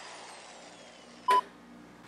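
A single short electronic beep about a second and a quarter in, over faint room tone.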